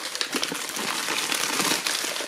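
Plastic mailer bag and bubble wrap crinkling as hands pull it open, a dense run of small crackles.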